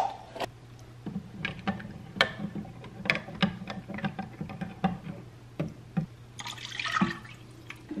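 Metal spoon stirring liquid in a glass measuring cup, clinking lightly against the glass about twice a second. A low steady hum runs underneath from about a second in.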